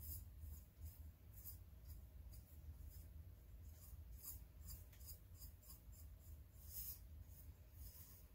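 Faint, irregular swishes of a paintbrush stroking crackle medium onto a tumbler, about two or three strokes a second, over a low steady hum.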